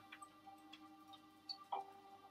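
Faint atmospheric music with a held low tone and a few soft, scattered ticks.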